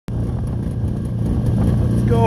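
A vintage John Deere 800 snowmobile's two-stroke engine idling steadily, with a fast, even low-pitched drone.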